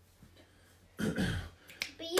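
A brief vocal sound about a second in, then two sharp finger snaps near the end.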